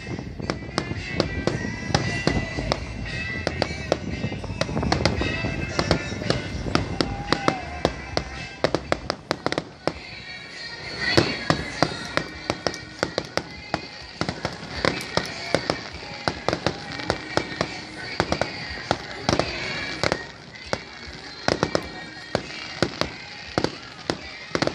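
Aerial fireworks shells bursting overhead in quick succession, a rapid string of sharp bangs and crackles, with music and voices in the background.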